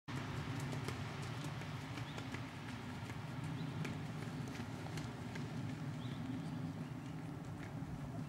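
Ridden horse's hoofbeats on a sand arena, heard as irregular faint clicks, several a second, over a steady low rumble.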